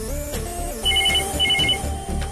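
Electronic desk telephone ringing: two short bursts of rapid, high trilling beeps, the second following about half a second after the first.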